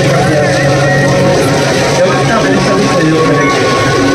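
Crowd noise: many voices mixed together over a steady low hum.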